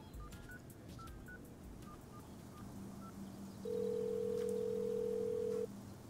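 Smartphone keypad beeping as a number is tapped in: a few short beeps. About three and a half seconds in, a steady two-second ringing tone follows, the ringback heard while the call goes through.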